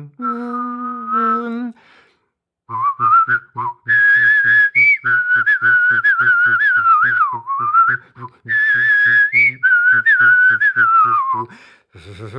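One person whistling a melody while at the same time voicing a low, rhythmic pulsing line underneath, performing a trombone piece in whistle-and-voice style. It opens with a short held, hummed or sung note, then after a brief pause the whistled tune and the pulsing voice run together until just before the end.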